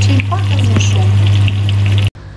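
Breaded chicken tenders sizzling in hot oil in a frying pan, with small crackling spatters, over a steady low hum.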